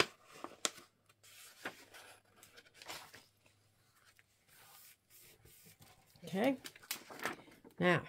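Book pages being handled and folded by hand: paper rustling and crackling in short, scattered bursts, with light taps on the table. A few murmured words near the end.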